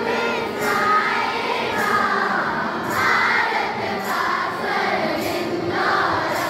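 A group of voices singing together in unison, held steady with no pause.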